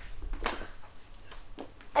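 Faint scuffing and a few soft knocks as a child drops to a rubber floor mat and grabs a falling broom handle, with a short rustle about half a second in.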